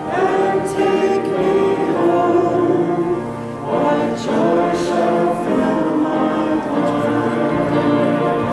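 Congregation singing a hymn together in long held notes.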